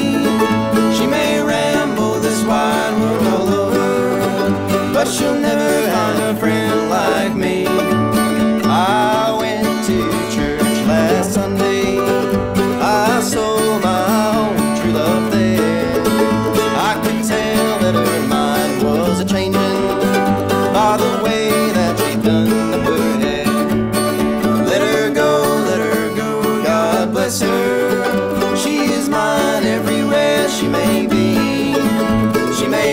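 Mandolin and acoustic guitar playing a bluegrass duet together, with plucked melody notes over steady strummed accompaniment.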